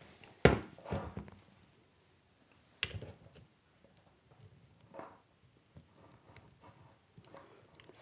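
A cordless drill being handled while wire ends are fed by hand into its chuck: a loud knock about half a second in, a few lighter knocks, and a sharp click near the three-second mark. The drill's motor is not running.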